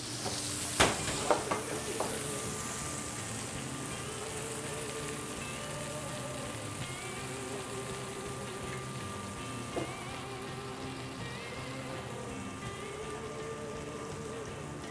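Venison loin sizzling steadily in a hot oiled skillet. A sharp clank about a second in.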